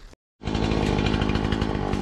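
A small engine running steadily at constant speed. It cuts in abruptly a moment in, after a short dead gap.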